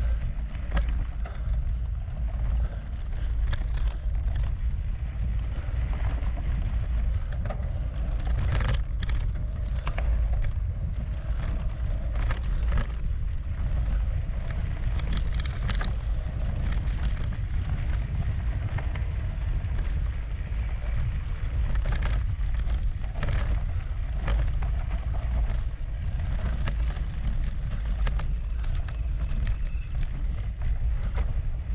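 Wind buffeting the microphone and mountain-bike tyres rolling fast over a dirt forest trail: a steady deep rumble, with scattered clicks and rattles from the bike over bumps.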